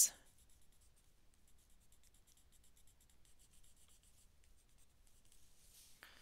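Faint scratching of a Derwent Inktense pencil colouring on sketchbook paper, a steady run of short strokes.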